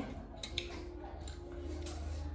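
A few faint light clicks and ticks as a brass plate is handled, over a steady low hum.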